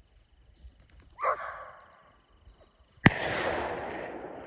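A single sharp gunshot about three seconds in, its report fading in a long echo. It comes after a fainter, softer burst about a second in.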